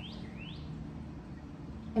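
A songbird chirping: a quick run of short rising-then-falling chirps, about three a second, that stops about half a second in. A steady low hum continues underneath.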